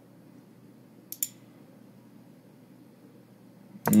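Quiet room hum with one brief, sharp click about a second in.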